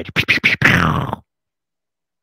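A man laughing in short bursts, cut off suddenly just over a second in, then dead silence.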